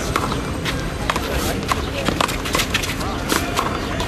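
One-wall handball rally: the rubber handball is slapped by hands and smacks off the wall and pavement, a quick, irregular series of about ten sharp slaps. Spectator chatter runs underneath.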